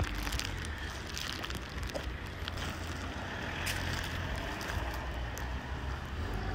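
Outdoor street ambience with a steady low rumble of wind on the phone microphone and a few faint light clicks.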